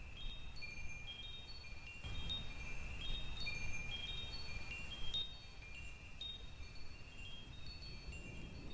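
Chimes ringing softly: many short, high, bell-like notes overlapping in an uneven, unmetered stream, typical of wind chimes.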